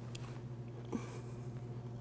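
Quiet room tone with a steady low hum, and one brief faint sound about a second in.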